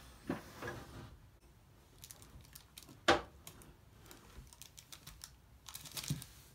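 Light, irregular metallic clicks and ticks of a thin steel oil-ring side rail being worked by hand into the ring groove of a VW piston, with one sharper click about three seconds in.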